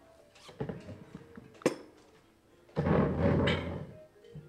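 Furniture and movement sounds as a man shifts out of his seat at a table: a few knocks, a sharp click, then about a second of loud scraping noise near the end.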